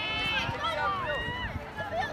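Outdoor crowd voices: children and onlookers calling out and shouting around the game, with a high-pitched shout at the start and another held call about a second in.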